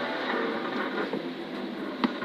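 Subaru Impreza rally car's turbocharged flat-four engine running, with tyre and road noise on wet tarmac, heard from inside the cabin at speed; the sound stays steady throughout.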